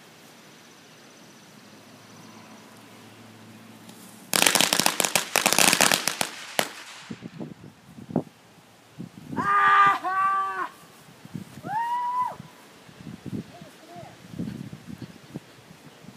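A string of firecrackers rigged on a model plane goes off about four seconds in: a dense run of rapid cracks lasting about two seconds, then stopping.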